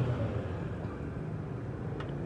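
Steady background hum of street traffic, an even wash of noise with no distinct engine note.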